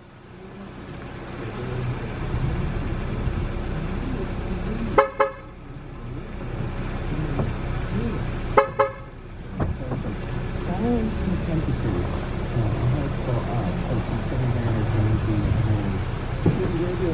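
Two short car-horn toots about three and a half seconds apart, over a steady low hum.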